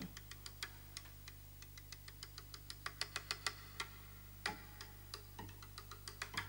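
Faint, irregular clicks and ticks, several a second, over a low steady hum.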